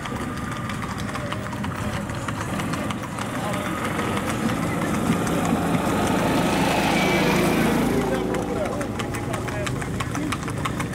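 Gaited horses' hooves clopping on a paved road, with a small vehicle engine running behind them that grows louder in the middle, peaking about seven to eight seconds in.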